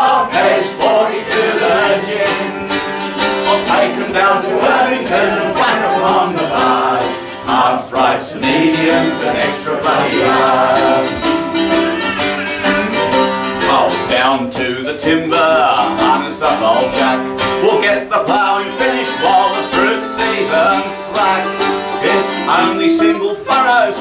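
Live acoustic folk song: a man and a woman singing together over a strummed archtop guitar and a mandolin.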